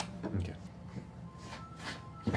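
A single short spoken word ("okay") near the start, then a low lull of room sound with a few faint breathy sounds from the people at the table.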